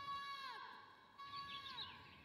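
Faint, fading echoes of a held note: the same pitched tone repeats about twice, each time holding steady and then sliding down in pitch at its end, each repeat quieter than the last.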